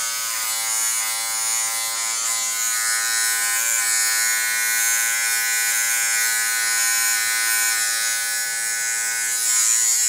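Small Wahl electric hair clipper buzzing steadily as its blade trims short hair up the nape.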